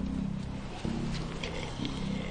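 Walkers (zombies) growling in low, guttural pulses, about one a second.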